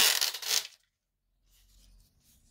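Backing liner being peeled off a strip of self-adhesive PTFE (teflon) tape: a short tearing rustle that stops under a second in.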